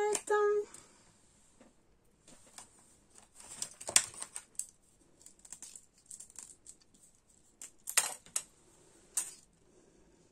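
Handling a strip of kraft paper on a cutting mat: light paper rustles and scattered small clicks and taps, the sharpest about four seconds in and a few more near the end.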